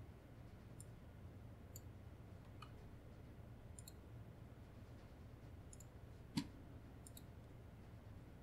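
Faint, scattered computer mouse clicks, about eight in all, the loudest a little past six seconds in, over a low steady hum of room tone.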